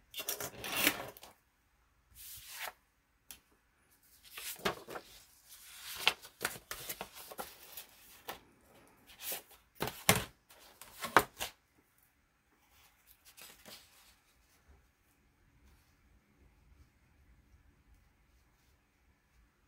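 Sheets of paper being handled, slid and shuffled over a cutting mat, with a clear acrylic ruler moved and set down among them: irregular rustles and light knocks for about twelve seconds, then only faint shuffling.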